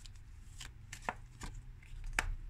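Tarot cards being handled and laid down: a series of light clicks and taps, about half a dozen spread through the moment.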